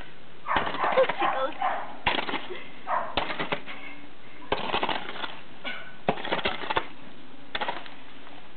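A shovel blade striking and scraping at frozen dog droppings and ice on the ground, a series of short crunching chops about one a second. The ice has softened enough in mild weather to be broken loose.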